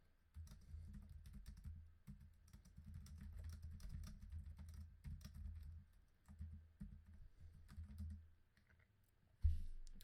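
Computer keyboard typing in quick runs of keystrokes, with a brief pause about two seconds in, stopping a little before the end. A soft low thump follows just before the end.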